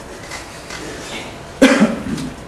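A person coughs once, a short sharp cough about a second and a half in.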